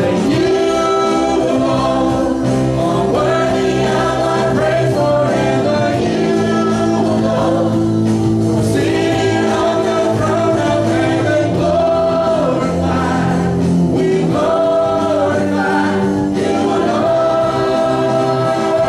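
A live church worship band plays a contemporary praise song. A man sings lead into a microphone with a woman singing along, over keyboard, guitar and drums.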